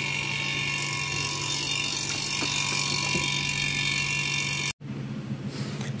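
Air-conditioning vacuum pump running steadily with a constant hum and whine while it evacuates a car's AC system through the low- and high-pressure service ports after a welded leak repair on the low-pressure pipe. The sound cuts off suddenly near the end.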